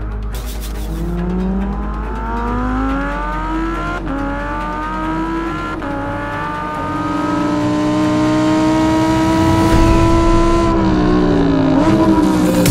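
Lamborghini Huracán EVO's V10 engine accelerating: its pitch climbs, drops sharply twice at gear changes a couple of seconds apart, then climbs slowly and grows louder before falling away near the end as the throttle is lifted.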